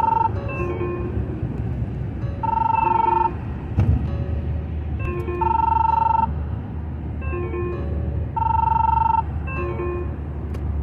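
Smartphone ringtone for an incoming call: a short melody that repeats about every three seconds, over the low rumble of the car on the road. A single thump about four seconds in.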